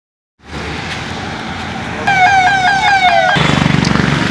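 Street traffic noise, cut through from about two seconds in by a vehicle's electronic siren: a loud falling note repeated about four times a second for about a second and a half. Near the end, a nearby engine runs with a fast low pulse.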